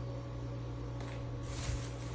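Brief crackle of a cardboard chicken broth carton's cap and seal being opened, about one and a half seconds in, over a steady low hum.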